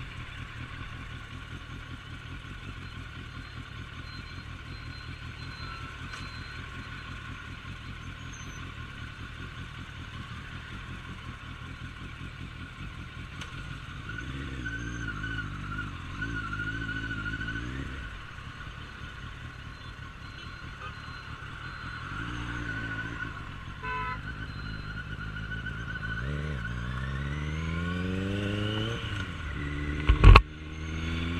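Suzuki Bandit 1250S's inline-four engine idling in traffic, then pulling away and accelerating. Near the end its pitch rises steadily, with a drop as it shifts up a gear.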